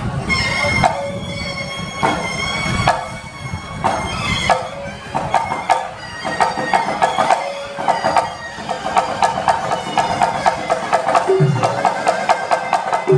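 Thai wong buayloy funeral ensemble playing: the pi chawa, a nasal Javanese oboe, carries a wavering melody over klong malayu barrel drums. The drumming turns into a fast, steady beat from about halfway, with a deep low stroke near the end.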